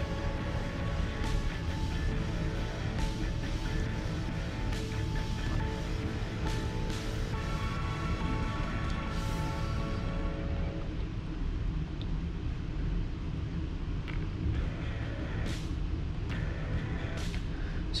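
Background music at a steady level, with held melodic notes that thin out about halfway through.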